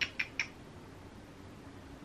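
Three small, quick clicks in the first half second, about a fifth of a second apart, then quiet room tone.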